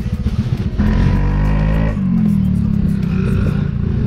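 Scooter engines pulling away from a standstill, revving up and then running steadily, with music playing over them.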